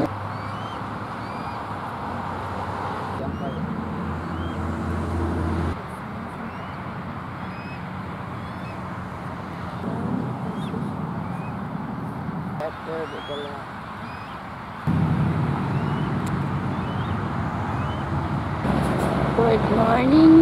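Steady road traffic noise with faint, short high-pitched chirps repeated every second or so: juvenile bald eagles calling. A low hum starts and stops abruptly several times.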